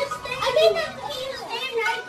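Young children's voices talking and calling out.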